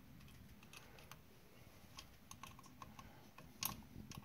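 Faint, irregular small clicks and taps of hands working the parts of an old distributor mounted in a distributor test machine, with one sharper click shortly before the end.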